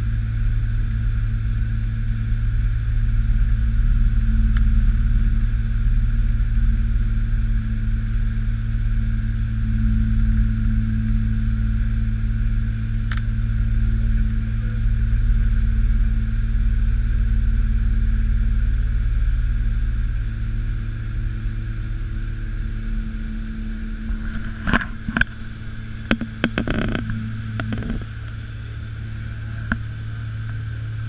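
Cabin noise of a Saab 2000 climbing out after take-off, heard at the window beside the wing: its Allison AE 2100 turboprop engines and six-bladed propellers make a steady low drone with several held tones, which drops a little in level about two-thirds of the way through. A few sharp clicks and knocks come a few seconds before the end.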